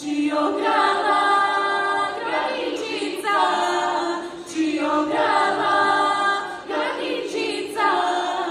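A girl soloist and a choir of girls singing a Bulgarian folk song a cappella, in phrases a second or two long with short breaks between them.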